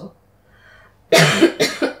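A woman coughing twice in quick succession, starting about a second in.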